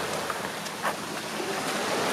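Small waves washing onto a pebble shore, a steady hiss with a faint tick or two.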